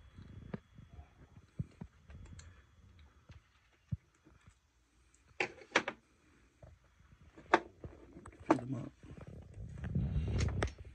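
Hand-work sounds: scissors and small plastic switch parts and wires of an RC speed controller being handled, giving a scattering of soft clicks and knocks with faint rubbing between. The two sharpest clicks come close together about five and a half seconds in.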